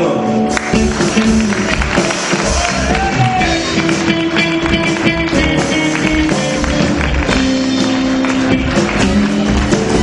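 Live rock and roll band playing, with a Stratocaster-style electric guitar out front over bass and drums.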